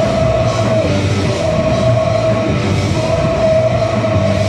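A rock band playing loudly live, with electric guitars and drums, and a long held note running over the top for most of the time.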